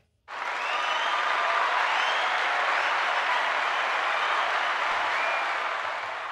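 Crowd applause with some cheering, starting abruptly and fading out near the end, likely a played-in recording rather than a live room.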